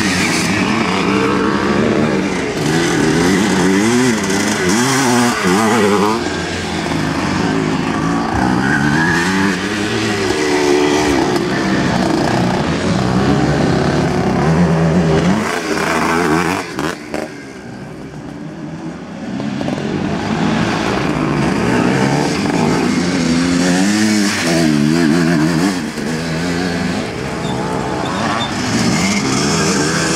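Vintage motocross motorcycles racing past, engines revving hard, their pitch rising and falling with each gear change and bike. The sound dips for a couple of seconds just past the middle, then the revving picks up again.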